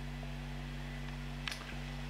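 Steady low electrical hum from an electric guitar plugged into an amplifier: background noise from the live signal chain. A single light click comes about one and a half seconds in.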